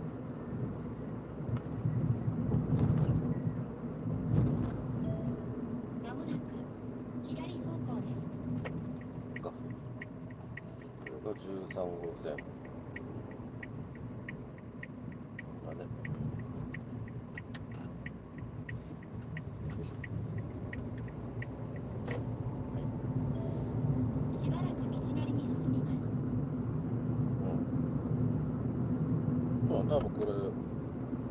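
Car interior road and engine noise, a steady low rumble with a constant drone, while driving on a town road. About a third of the way in, the turn-signal indicator ticks evenly for about ten seconds, then stops.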